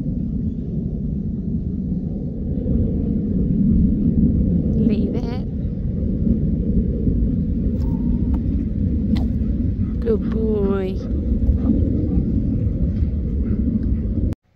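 Wind buffeting the microphone, a loud, steady low rumble, with two brief high warbling calls about five seconds in and about ten seconds in.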